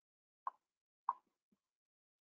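Two short, sharp computer mouse clicks a little over half a second apart, followed by a fainter, softer click.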